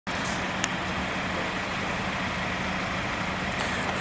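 Steady motor-vehicle noise at an even level, with a low hum running under it and a brief click about half a second in.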